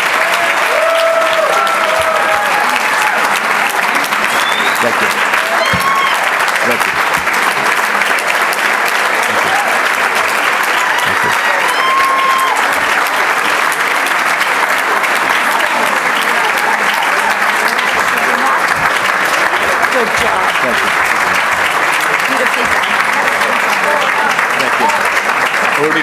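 Audience applauding steadily without a break, with a few short voices calling out over the clapping.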